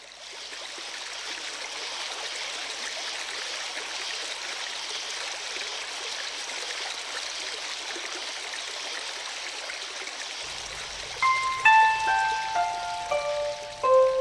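A recording of running stream water fades in and holds steady as the opening of a track. About eleven seconds in, a Chinese zither enters over it with a run of single plucked notes, mostly stepping downward; these are the loudest sounds.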